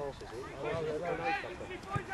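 Indistinct shouting from several voices across a youth football pitch, with a single dull thud near the end.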